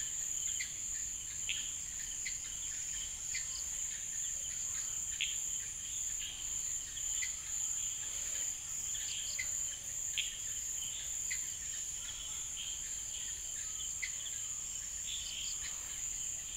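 Evening insect chorus: a steady high-pitched drone with short chirps scattered through it.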